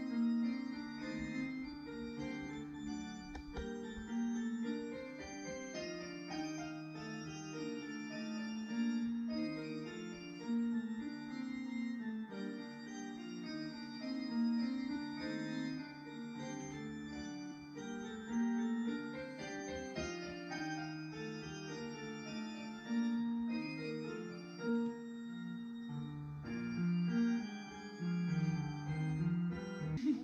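A solo piece played on a digital piano, mostly in the middle register, with notes following one another at a steady level. The playing starts suddenly at the beginning.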